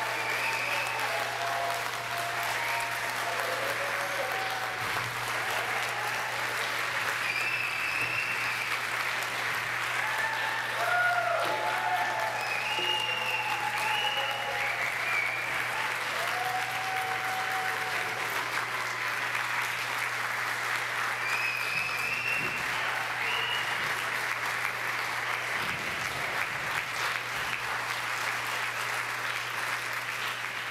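Audience applauding with steady dense clapping, with whoops and shouts of cheering over it. A low steady hum runs underneath.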